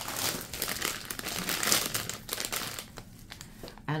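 Plastic candy bags crinkling as they are handled, a dense run of crinkling for about three seconds that thins out near the end.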